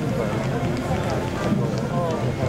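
People talking close by over the general noise of a parade crowd.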